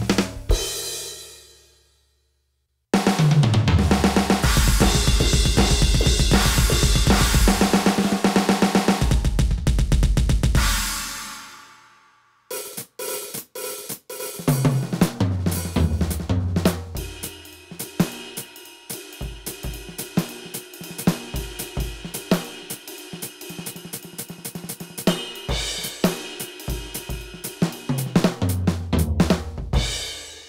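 Yamaha DTX400K electronic drum kit played with sticks, its drum voices heard from the sound module: a sound dies away, then after a short pause a loud, dense groove of kick drum and cymbals plays for about eight seconds and fades out. After another pause a lighter beat of separate snare and kick hits runs on, the pauses marking changes between the module's preset drum kits.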